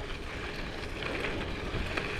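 Hybrid bike rolling steadily along a gravel road: its tyres make an even rumble, mixed with wind buffeting the microphone.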